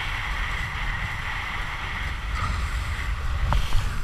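Wind buffeting the microphone over the steady hiss of a kiteboard planing through choppy water, with a couple of short knocks near the end as the board hits the chop.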